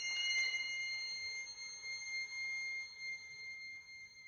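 String quartet in a quiet passage: a violin holds a single very high, thin note that slowly fades.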